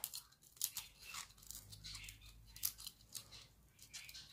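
Faint, irregular small crackles and snaps of plastic as fingers pick hardened burrs of melted plastic off the cut edge of an old CD. The burrs were left by cutting the disc with a heated blade.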